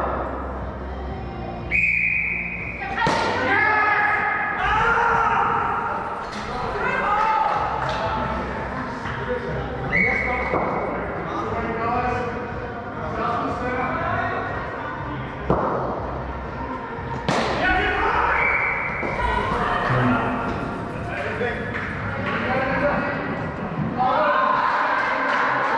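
Indoor cricket in a large echoing hall: voices and background music throughout, with a few sharp knocks of the ball off bat, floor or net. Three times a short, steady high tone sounds for about a second.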